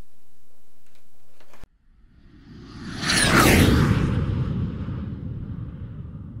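Faint room tone that cuts off suddenly, then a whoosh sound effect swells up to a loud peak with a high whistle falling through it and fades away into a low rumble.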